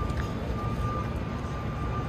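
Steady low rumble of outdoor traffic noise, with a faint high whine held over it.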